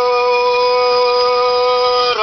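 A woman's singing voice holding one long, steady note over the song's accompaniment.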